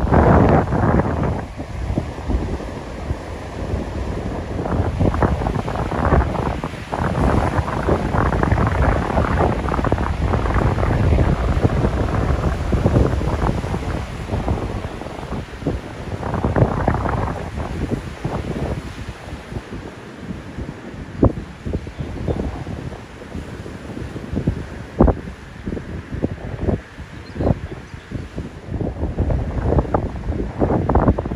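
Wind buffeting the microphone over the rush of rough Baltic Sea surf breaking on the shore. The gusts are strongest in the first two-thirds and ease off later, when a few brief knocks are heard.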